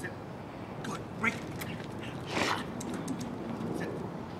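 A young golden retriever puppy making a few short, high squeaky whines and yips, with a louder, rougher one about halfway through.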